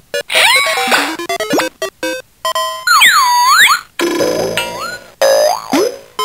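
Electronic sound effects from a 2005 Playskool Busy Ball Popper's sound chip and speaker: a string of short bleeps with sliding pitch glides, a wobbling up-and-down warble in the middle, and another glide near the end.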